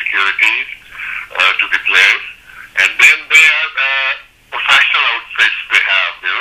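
Speech only: a man talking over a telephone line, his voice thin and narrow-band, with a brief pause about four seconds in.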